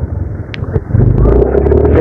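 Motorcycle engine running under the rider, growing louder about a second in as it pulls with a steady low drone.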